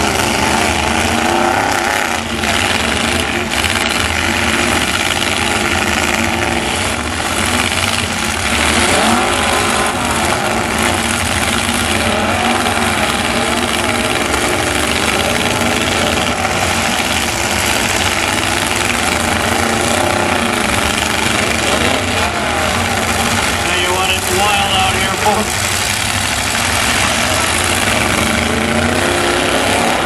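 Several pickup truck engines running and revving at once, their pitch rising and falling continuously as the trucks ram and push each other, with a few brief knocks.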